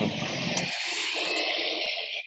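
A steady rushing hiss, mostly high-pitched, carried over a video call's audio; it fades out just after two seconds.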